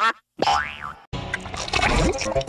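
Cartoon boing sound effect: one springy pitch glide that rises and falls, followed after a brief gap by busy logo-jingle music with cartoon sound effects.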